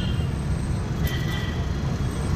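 Steady low engine and road rumble heard from inside a car's cabin, moving slowly in city traffic. About halfway through, a faint, distant vehicle horn tone comes in.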